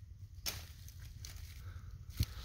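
Quiet outdoor background with a low rumble and a single faint click about half a second in.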